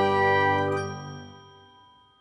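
The held, ringing final chord of a short intro music sting, dying away over about a second and a half into silence.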